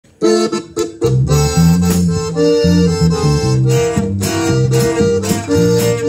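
Live band music led by an accordion, with guitars, a bass line and drums. A few short opening accents sound first, then the full band comes in about a second in.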